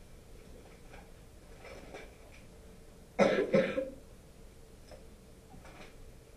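A person coughs twice in quick succession about three seconds in, against a quiet room.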